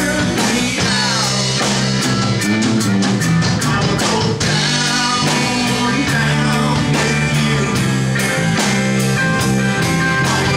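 Live rock band playing: electric guitars and bass over a drum kit keeping a steady beat.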